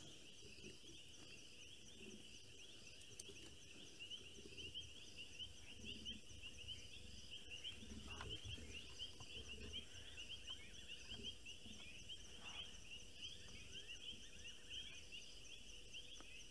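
A steady, fast-pulsing high trill from a night chorus of insects. Beneath it, faint low leopard growls come and go, strongest around the middle.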